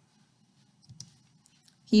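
Quiet room tone with a few faint clicks around the middle, then a woman's voice starts right at the end.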